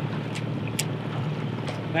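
Fishing boat's outboard motor running steadily at trolling speed, with wind on the microphone and a few short clicks.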